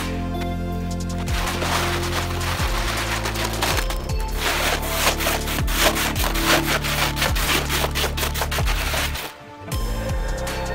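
Gravel pouring from a plastic tray into a plastic kiddie pool and being raked by hand, a dense rattling clatter of small stones on plastic that starts about a second in, over background music.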